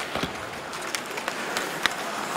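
Ice hockey arena ambience during live play: a steady crowd murmur with skates scraping and scattered sharp clacks of sticks and puck, the loudest clack shortly before the end.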